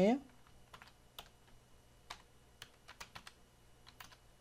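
Computer keyboard being typed on: a dozen or so light, separate keystrokes at an uneven pace.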